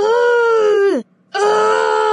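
A voice letting out two long, drawn-out cries. The first lasts about a second and drops in pitch as it ends; the second starts a little later and is still going at the end.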